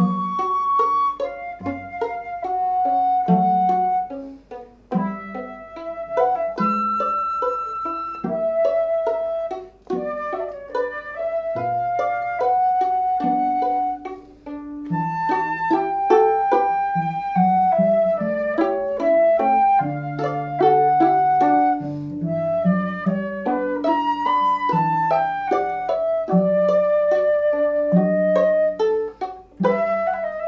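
Concert flute playing a flowing classical melody over a lower accompaniment of short, separately attacked notes, with brief pauses between phrases.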